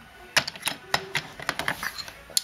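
A string of light, irregular clicks and taps: a small toy train engine knocking against wooden track pieces as it is picked up and handled.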